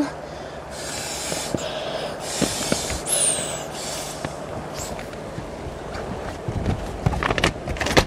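Breath blown through a thin tube to inflate a packraft's inflatable footbrace: several hissing puffs in the first half, then rubbing and handling of the coated fabric near the end.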